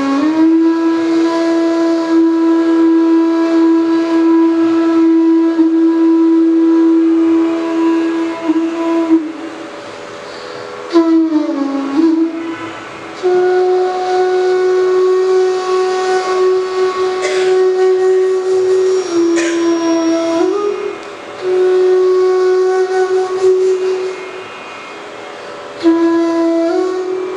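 Bansuri (bamboo flute) playing a slow, unaccompanied phrase in Raag Bhupali. Long held notes are joined by gliding slides, with short pauses between phrases, the last one near the end.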